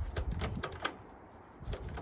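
A few sharp clicks and knocks in the first second, then quieter: the controls of an old Ford tractor being worked by hand while its engine is still off.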